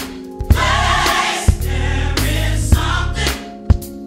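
Gospel choir singing with a full band: a sustained deep bass under the voices and sharp percussive hits through the passage.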